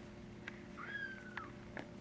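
A kitten mewing once: a thin, high cry in the middle that holds and falls slightly, with a few light clicks around it over a steady low hum.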